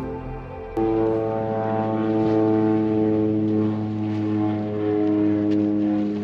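Music cuts off about a second in to a boat engine running steadily at low speed, a droning hum with a clear low pitch.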